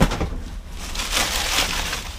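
A sharp knock at the start, then rustling and crinkling of shredded paper and cardboard as a gloved hand digs through a dumpster full of discarded paper and boxes.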